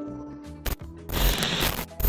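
Logo sound effect at the end of the outro: a sharp click, then about a second in a short rush of dense noise lasting most of a second, with another hit at the end.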